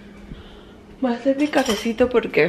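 Light clinks of cutlery and dishes, with a woman's voice louder over them from about a second in.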